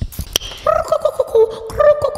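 A woman's voice making a high, trilling vocal sound into a handheld microphone, starting about half a second in and held with a few short breaks.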